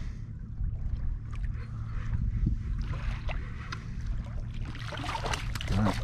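Water lapping against a sit-on-top fishing kayak's hull, with a low wind rumble on the microphone and small scattered ticks. Near the end a hooked bream splashes at the surface as it is reeled in.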